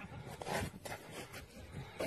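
Faint rustling and scraping of handling noise, a few short scrapes and clicks, as a large pike is picked up off the snow and hooked onto a hand scale.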